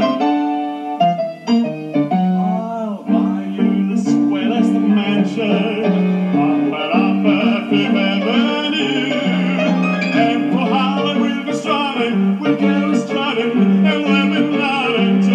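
A man singing a show tune in a full, operatic voice with vibrato, accompanied by piano.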